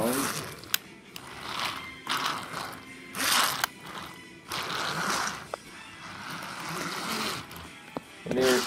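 Handling noise as wooden toy trains are moved by hand on the track: several rustling, scraping bursts and two sharp clicks.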